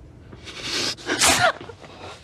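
A rustling, breathy hiss, then about a second in a woman's sharp, breathy cry that falls in pitch, as her shirt is yanked up.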